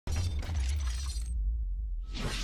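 Animated-logo sound effect of a ball rolling along a groove: a rattling, rolling noise that stops after about a second and a quarter, leaving a low rumble underneath.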